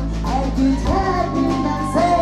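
Live band music: vocalists singing over sustained bass, keyboard and drums, the bass moving to a new note about a second in.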